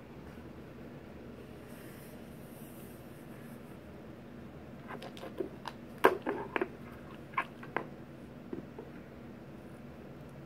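Low room hum, then a short run of light knocks and clicks about halfway through as a hand handles a soft tape measure and a crocheted blanket on a wooden table.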